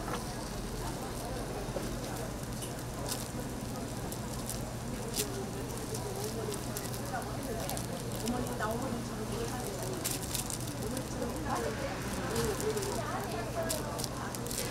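Deep-frying oil crackling, with a steady hiss and many short sharp pops that thicken toward the end, under indistinct background voices.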